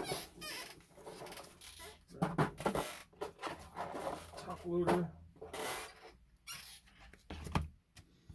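Soft plastic trading-card sleeves being handled as a card is sleeved: irregular rustling, rubbing and small squeaks of plastic.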